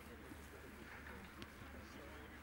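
Faint outdoor background: distant voices with a low steady hum, and a single small click about halfway through.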